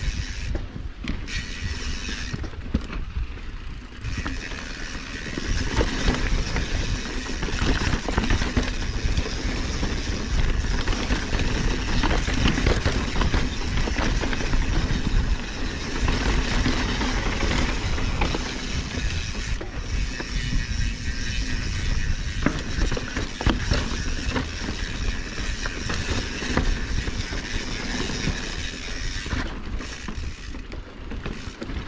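Mountain bike ridden over rough dirt and rock, heard from the bike: wind on the microphone with a steady run of knocks and rattles from the tyres and frame over the bumps.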